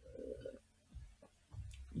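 A man swallowing a drink from a glass: faint gulps, mostly in the first half second.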